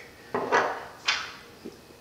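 Handling sounds of half-inch copper tubing and a white PVC side outlet elbow: two short knocks or scrapes that fade quickly, about three-quarters of a second apart, and a fainter one near the end.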